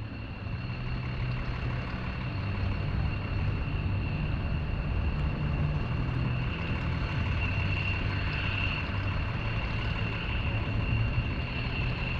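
Boeing C-17 Globemaster III's four Pratt & Whitney F117 turbofan engines running as it flies past, a steady low rumble with a thin high whine that grows a little louder about two-thirds of the way through.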